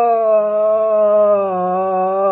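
A man's voice singing one long note, unaccompanied, held nearly steady in pitch.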